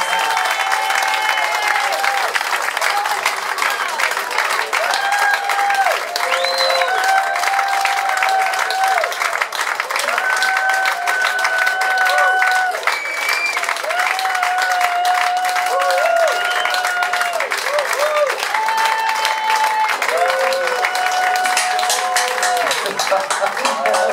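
Audience clapping and cheering at a loud, even level, with voices calling out in long held tones over the clapping.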